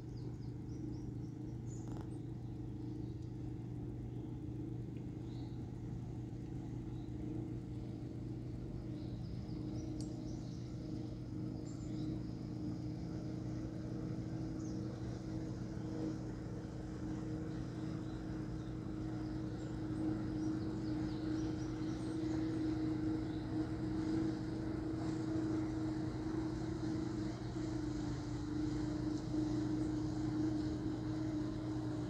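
A steady low motor-like hum with two constant tones, growing slowly louder over the last third, the higher tone dropping slightly in pitch near the end.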